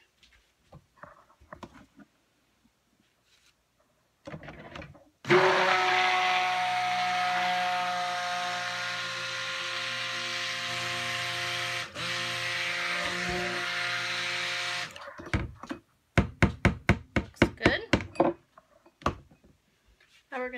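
Stick blender running steadily for about ten seconds, mixing lye and goat milk into melted oils for cold process soap, with a brief dip partway. It is followed by a quick run of sharp knocks, about five a second.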